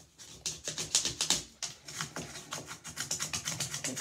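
Plastic clothes hanger scraping soap scum off glazed ceramic wall tiles in quick, repeated rasping strokes that come faster and more evenly in the second half.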